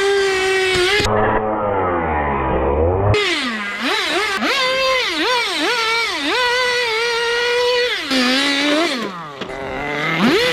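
Nitro RC drift car's small glow-plug engine, revved hard and let off over and over as the car is driven, a high buzzing note swooping up and down. For about two seconds near the start it sounds muffled and deeper.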